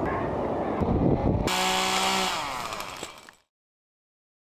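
Chainsaw running: a rough, noisy stretch, then a steady high engine note from about one and a half seconds in. The sound cuts off abruptly near the end.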